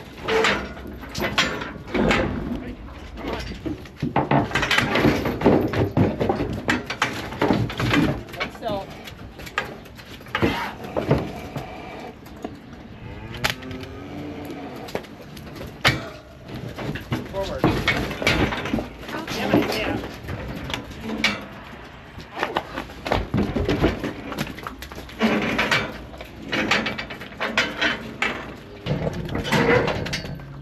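Steel cattle head catch and alley gates clanging and rattling as steers are caught and let through, with indistinct voices.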